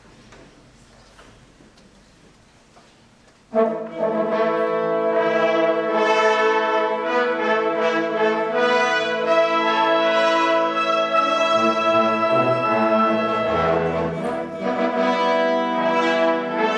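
Wind band of flutes, clarinets, saxophones and brass coming in all together about three and a half seconds in, after a few seconds of faint room noise, and playing full, sustained chords.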